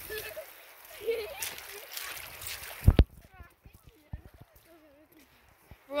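Footsteps splashing and sloshing through shallow water and gravel, with one loud knock just before three seconds in and faint voices in the background.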